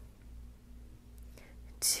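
A quiet room with a faint steady hum, and a short, sharp breath from the instructor near the end, just before her next spoken count.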